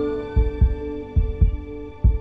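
Closing theme music: a held synth chord over low double thumps like a heartbeat, one pair about every 0.8 s, fading out.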